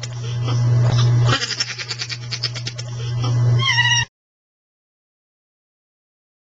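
A low, rattling, voice-like drone in two long stretches, each swelling louder, ending in a short higher note. It cuts off suddenly about four seconds in.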